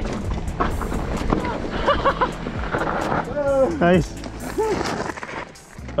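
Mountain bike descending a rough dirt trail: tyres on dirt and loose stones, with frequent sharp knocks and rattles from the bike over bumps. Short shouted exclamations come through over it.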